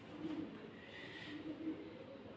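Faint pigeon cooing: two short, low calls.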